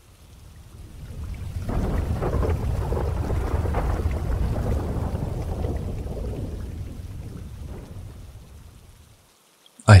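A low, thunder-like rumble with a rain-like hiss over it, swelling in over the first two seconds, holding, then fading away by about nine seconds: an inserted storm sound effect.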